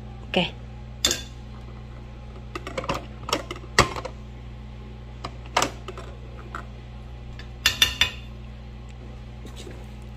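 A plastic rice paddle scooping cooked rice in a rice cooker's non-stick inner pot. It gives short taps and scrapes against the pot and the rice bowl in irregular clusters, over a steady low hum.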